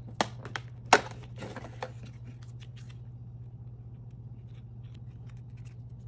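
Perforated cardboard door of an advent calendar being pushed in and torn open: a few sharp cracks and rips, the loudest about a second in. After that come only faint rustles and ticks of handling, over a low steady hum.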